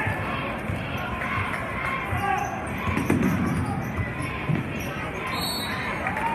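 A basketball bouncing on a wooden gym floor during play, irregular dull thuds, over the chatter of a crowd in a large gym.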